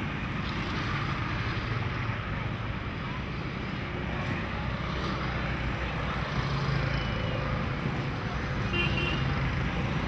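Steady road traffic: vehicle engines running and passing, with a brief high horn toot near the end.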